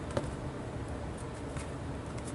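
Faint soft ticks and rustles of an oracle card deck being shuffled by hand, over a low steady room hum.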